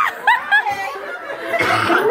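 A person laughing in a few short, high-pitched bursts near the start, over the chatter of a group of people in a room.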